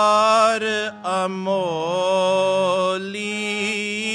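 Gurbani kirtan: a man sings long, wavering, melismatic held notes over a sustained harmonium. There is a short break about a second in, and a new sung phrase begins near the three-second mark.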